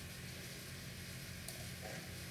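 Quiet room tone: a faint steady hiss with a low hum from the recording microphone, with one faint tick about one and a half seconds in.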